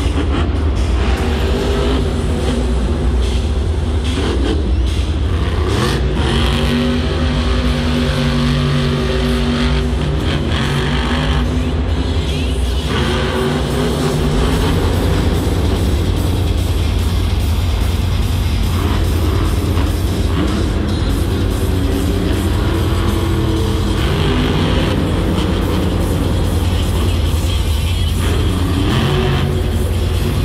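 Monster truck engine running hard through a freestyle run. It revs up and eases off over a constant deep rumble, with loud arena music playing at the same time.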